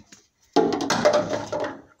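Crackling, scraping handling noise, full of small clicks, starting about half a second in and stopping just before the end.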